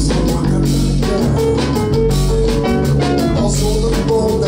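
Live jazz band playing with electric guitar, bass guitar and drum kit keeping a steady beat.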